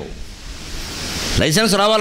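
A man's voice speaking into a microphone breaks off; a soft hiss swells in the pause, and his speech resumes about one and a half seconds in.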